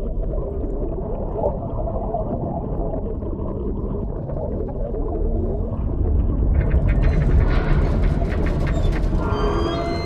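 Muffled underwater ambience around a shark cage: a steady low rumble of water. About six and a half seconds in it grows louder and busier, with crackling clicks and churning, and a few short high tones sound near the end.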